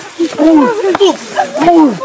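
Several people shouting and crying out at once in short, loud, overlapping cries with no clear words.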